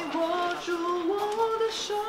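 Background song: a sung melody of long held notes, stepping gradually upward in pitch.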